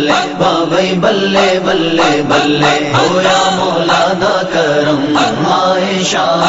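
Voices chanting a Punjabi devotional naat in a steady rhythm over a held low drone.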